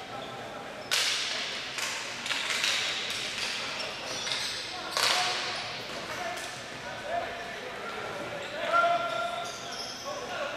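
Ball hockey play on a concrete rink: sharp cracks of sticks hitting the ball and the ball striking the boards, each ringing briefly in the hall. The loudest come about one second in and about five seconds in, with several smaller ones between. Shouts of players and spectators follow near the end.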